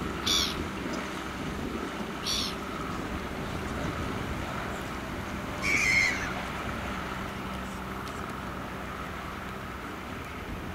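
Small outboard motor running steadily as a motorboat crosses the harbour, a low hum with a faint steady whine. Three short high bird calls cut through it, about a second apart at first and then near the middle; the last is the loudest.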